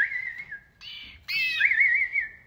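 High whistled calls, each breaking into a quick warble and then holding a steady note: one at the start, and a louder one from a little past halfway.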